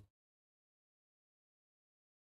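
Complete silence: the sound drops out to nothing.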